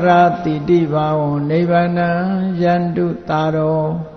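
One man's voice chanting a Buddhist Pali recitation in long, held notes that slide gently between pitches, with a short break for breath about three seconds in.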